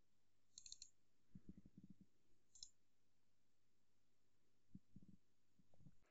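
Near silence with a few faint computer mouse clicks, the first a little under a second in and another near three seconds, along with soft low knocks.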